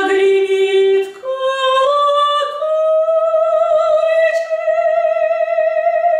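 A woman singing a Russian romance unaccompanied in a trained operatic voice. The line climbs in steps through several notes and then settles on one long held note from about two and a half seconds in.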